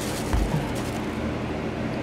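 Steady low hum with a short, dull thump about a third of a second in, as groceries are handled among plastic shopping bags.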